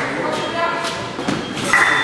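Épée bout on a fencing piste in a large hall: a few sharp thuds from the fencers' footwork over a background of voices. Near the end the crowd noise swells.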